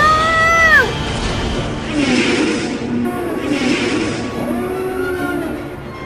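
A child's short high-pitched cry, rising and then falling, lasting under a second, over orchestral film score that carries on after it.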